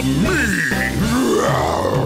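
Children's song backing music with a cartoon Tyrannosaurus rex roar sound effect in the second half, a growl that rises and then falls.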